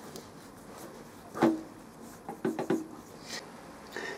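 Light metal knocks and clinks as a four-jaw chuck is spun by hand onto the threaded spindle of a Vertex dividing head: one sharper knock with a short ring about a second and a half in, then a quick run of three or four smaller ones a second later.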